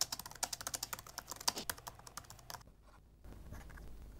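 Felt-tip marker writing digits on paper: a quick, uneven run of small ticks and scrapes from the tip, one for each stroke. It stops about two-thirds of the way through.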